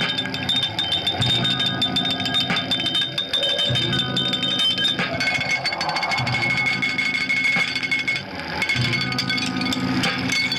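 Live improvised experimental electronic noise music: a dense crackling texture with sustained high tones that drop to a lower pitch about halfway through, over low throbs recurring every couple of seconds.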